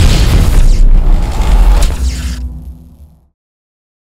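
A loud cinematic impact hit for a title card: a deep boom with a wash of noise above it, dying away into a low rumble and cutting off to silence a little after three seconds in.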